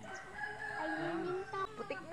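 A rooster crowing once, one drawn-out call lasting about a second and a half.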